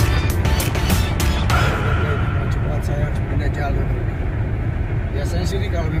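Background music with a steady beat that stops about a second and a half in, leaving a voice over a low steady hum.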